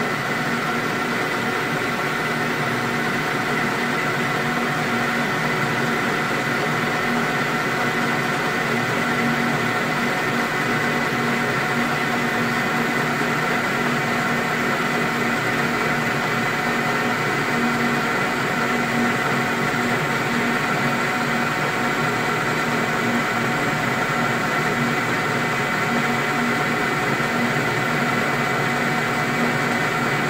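Metal lathe running steadily under a turning cut, the cutting tool taking metal off a slender bar held in the chuck. A mild chatter of the tool against the thin workpiece sounds over the hum of the machine.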